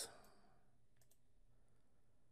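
Near silence with faint room hiss and a couple of faint clicks about a second in.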